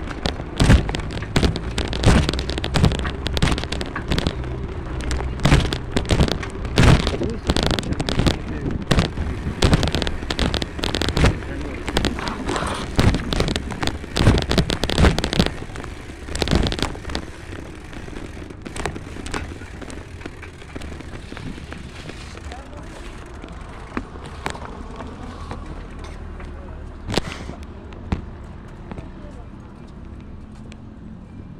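Irregular knocking and rattling from a handlebar-mounted phone and bicycle over a steady rumble of riding, dense in the first half and thinning out from about halfway, with only a few knocks near the end.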